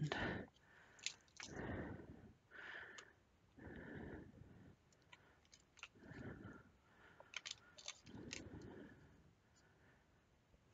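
Ceramic tile work surface being slid and turned on the table by hand: several soft scrapes about a second long, with a few light clicks near the end.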